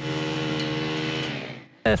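Engine of construction equipment running at a steady speed, holding one constant pitch, then fading out about a second and a half in.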